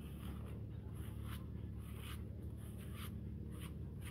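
A grooming brush drawn through a German Shepherd's long coat to pull out dead hair, making repeated short scratchy strokes at an irregular pace. A steady low rumble sits underneath.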